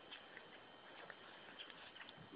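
Faint, irregular scratching and soft clicks of a husky's paws and nose digging in loose dirt, almost at the edge of silence.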